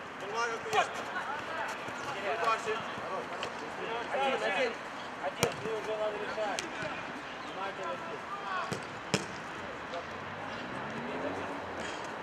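Minifootball players calling and shouting to one another on the pitch, with sharp thuds of the ball being kicked, three of them standing out: about a second in, about midway and about three-quarters through.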